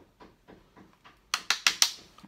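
Eyeshadow brush tapped against the eyeshadow palette four quick times, sharp clicks, knocking excess powder off the bristles after loading them with shadow.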